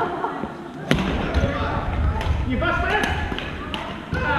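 Badminton rackets striking a shuttlecock: several sharp cracks, the loudest about a second in, echoing in a large gymnasium over the chatter of other players.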